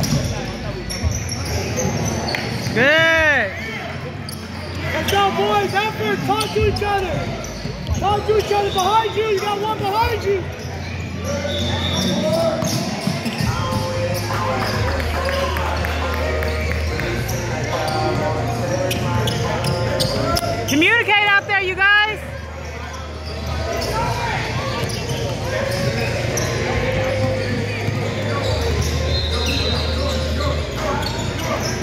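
Basketball being dribbled on a hardwood gym floor, with sneakers squeaking in short rising-and-falling chirps several times, loudest near the start and about two-thirds of the way in. Players' and onlookers' voices run underneath.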